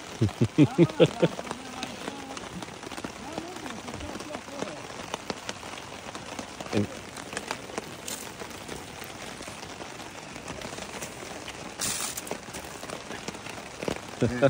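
Steady rain falling on a nylon tarp overhead, many separate drops ticking on it, with water dripping from its edge.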